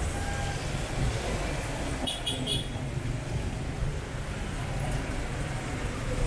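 Street traffic on wet pavement: car and truck engines running and tyres rolling past close by, a steady low rumble. Three short high chirps sound about two seconds in.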